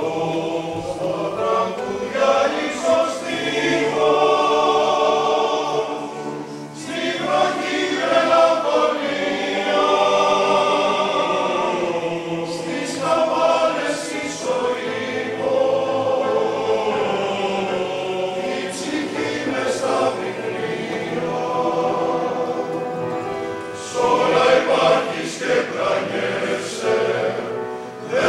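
Male choir singing a song in several parts, with piano accompaniment, in long phrases with short breaks between them.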